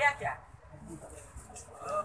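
A short, high-pitched voice at the very start, then a low murmur of a room full of people, with talk picking up again near the end.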